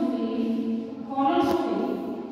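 A group of voices chanting together in unison on long held notes, with one sharp tap about one and a half seconds in.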